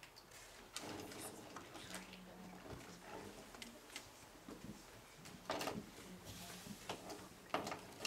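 Quiet room noise of people working at tables with pencils and paper: scattered light taps, rustles and knocks, with a couple of louder knocks in the second half.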